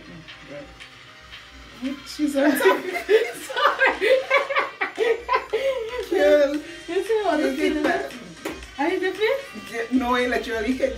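Faint background music, then about two seconds in a woman bursts into loud laughter that runs on through the rest.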